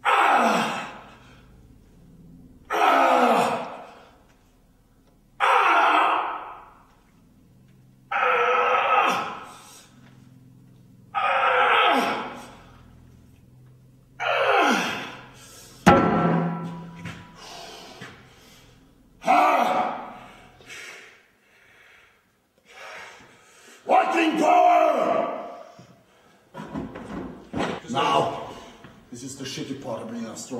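A man's loud grunts and shouts of strain, one about every three seconds, each falling in pitch, as he curls a heavy steel log rep after rep.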